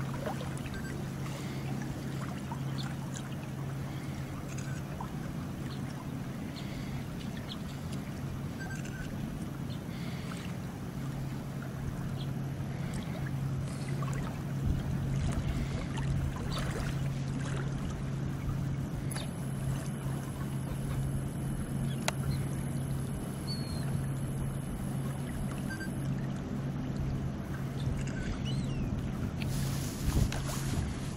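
Shallow sea water lapping and splashing around a wader's legs, with small scattered splashes, over a steady low hum.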